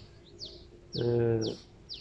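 A small bird chirping: short high notes that each fall in pitch, repeated about every half second. A man's voice briefly holds a syllable about a second in.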